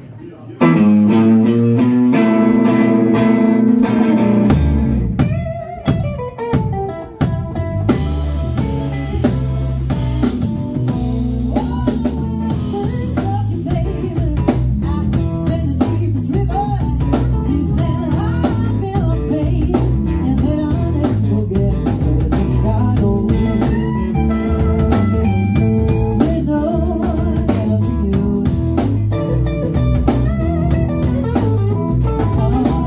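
Live blues band playing: electric guitars, electric bass and a drum kit, with a woman singing. It opens on held guitar notes, and the bass and drums come in about five seconds in.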